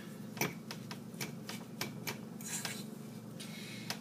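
Metal spoon stirring a thick canned-salmon and bread-crumb mixture in a mixing bowl, giving scattered light clinks and scrapes against the bowl.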